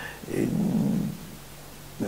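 A man's voice: a drawn-out hesitation, 'et…', held for most of a second about a third of a second in, then a pause with only room noise.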